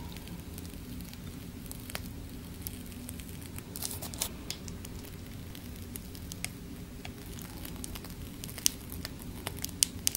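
Piping bag being squeezed as whipped cream is piped onto strawberry halves: faint crinkling of the bag and soft squishing of cream, with scattered small clicks over a low steady hum.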